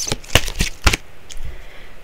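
A deck of oracle cards being handled and shuffled, giving several sharp snaps of card on card in the first second, then softer card sounds.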